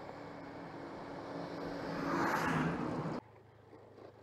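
Honda Vario 125 scooter being ridden: a steady engine hum under road and wind noise that swells louder about two seconds in. A little after three seconds it cuts off abruptly to a much quieter low hum.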